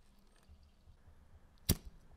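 Vintage Atlas Lite brass petrol lighter being lit: its thumb lever is pressed down, and the mechanism snaps once with a single sharp click near the end as the wick catches.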